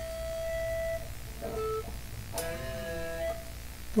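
Electric guitar played high up the neck on the two lowest-middle strings, fourth and fifth: a held note rings out and fades about a second in. A short note follows, then another pair of notes is plucked a little past halfway and left to ring.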